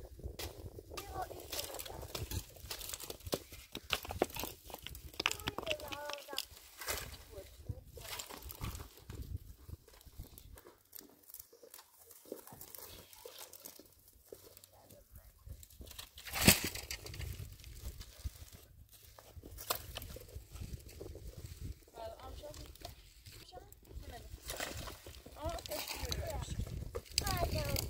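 Dry brush and twigs crackling and snapping as they are pulled and gathered by hand, with footsteps on loose stones; one sharp, loud snap comes about two-thirds of the way through.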